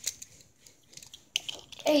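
A few small, sharp plastic clicks and taps from Beyblade parts being handled and fitted together close to the microphone: one right at the start, a couple more about one and a half seconds in.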